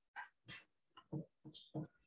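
Faint, brief vocal sounds in a series of short separate blips.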